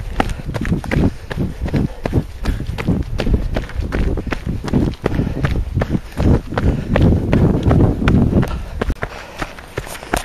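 Running footsteps on a dirt trail, a quick steady rhythm of footfalls close to a handheld camera carried by the runner, with low rumble from the camera being jostled.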